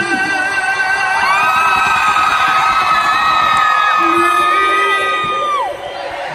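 Concert crowd cheering and whooping, with long high-pitched screams held for several seconds that fall away near the end, over a sustained musical tone.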